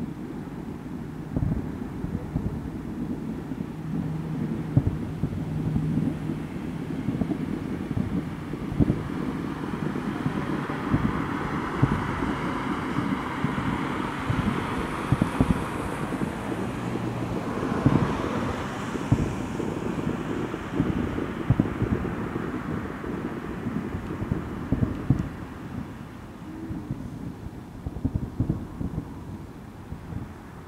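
Distant aerial fireworks: a string of dull low booms from shell bursts, coming thickest through the middle and thinning near the end, over wind rumbling on the microphone.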